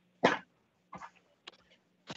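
A person coughs once, sharply, about a quarter second in, followed by a couple of faint short breathy sounds.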